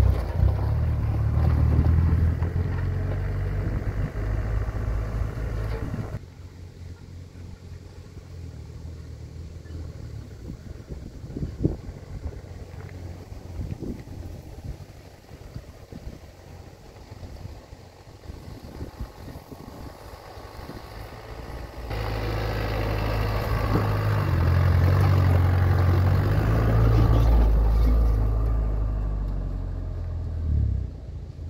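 Engine of a custom-built 4x4 FSO Polonez pickup running as it drives off-road over gravel. It is loud and close for the first six seconds, turns faint as the vehicle moves far off, and is loud again from about two-thirds of the way in as it comes back close.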